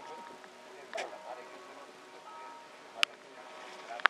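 Outdoor market crowd ambience: distant voices over faint steady tones, with a single sharp click about three seconds in.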